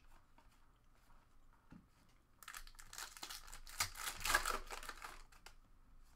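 Crinkling of a foil trading-card pack wrapper being handled, a crackly rustle lasting about three seconds from a little past the middle, with a few light clicks of cards being moved before it.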